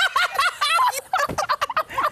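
Women laughing hard: a quick, high-pitched run of "ha" sounds, several a second.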